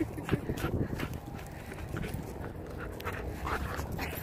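Dog panting while playing tug-of-war with a leash, with a few short low vocal sounds in the first second and a brief rising whine near the end.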